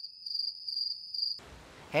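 Cricket chirring: a steady high trill that stops abruptly about a second and a half in, followed by a faint low rushing noise.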